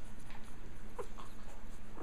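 A young Japanese Chin puppy gives a short, faint squeak about a second in, over a steady low background hum.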